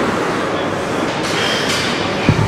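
Steady, loud rushing background noise of a gym during a set of dumbbell raises.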